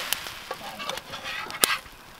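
Metal spatula scraping and clicking against a griddle pan as pancakes are flipped. The griddle is an old electric skillet stripped of its electronics, set over a campfire. A few short scrapes, then one sharp click near the end.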